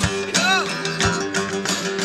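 Acoustic guitars strumming a blues between sung lines, with a short bending note about half a second in.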